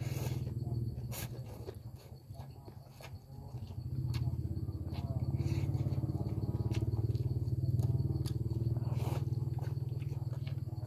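Close-up noodle slurping and chewing, with short wet sucking sounds and a few light clicks, over a steady low buzzing drone that dips briefly and swells again about four seconds in.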